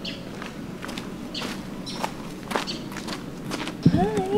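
Footsteps on a sandy dirt street: a handful of irregular short steps over a low outdoor hum, with a louder thump near the end.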